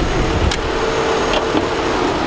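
A parked Mitsubishi Outlander PHEV running with its bonnet open and its air conditioning on, a steady hum with one constant tone. A single click sounds about half a second in.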